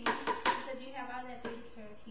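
A few sharp knocks in the first half second, then lighter taps, as a plate and a wooden spatula strike a blender jar while avocados are scraped into it. A woman's voice runs underneath.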